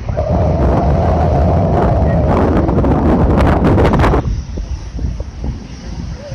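Loud wind buffeting the microphone for about four seconds, crackling toward the end, then cutting off suddenly, leaving a softer low rush of wind and surf.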